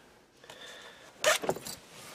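Keys in a shirt pocket jingling against the car: one sharp metallic clink about a second and a quarter in, then a couple of lighter clinks.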